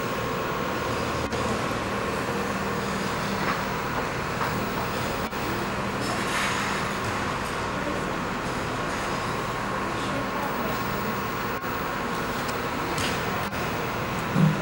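Steady mechanical hum of an indoor ice rink, with a few brief scrapes of figure-skate blades on the ice.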